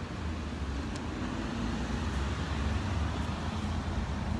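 City road traffic: a steady rumble of cars passing, with a faint engine hum and one small click about a second in.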